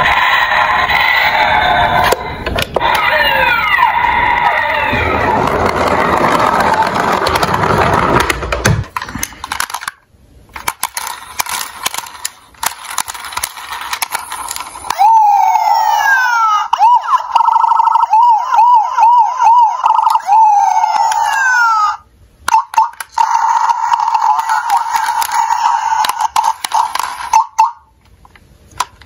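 Electronic siren and sound effects from battery-powered toy police cars, played through their small built-in speakers. For the first nine seconds a dense run of sound effects with falling sweeps, then a few plastic clicks as the toys are handled and buttons pressed, then a siren that wails, breaks into a fast warbling yelp and ends in a long held tone.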